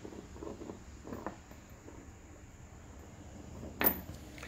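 Faint handling noise, then a single sharp knock just before the end as the phone filming is picked up and turned around.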